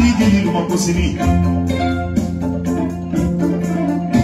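Kora music: plucked kora strings in a steady, continuous run over held low notes.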